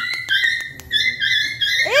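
A puppy whining: a string of high-pitched, drawn-out whines that step between pitches, ending in a rising cry. A run of light clicks sounds in the first second.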